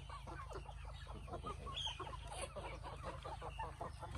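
Caged Burmese chickens clucking, a quick, continuous run of many short overlapping calls from several birds.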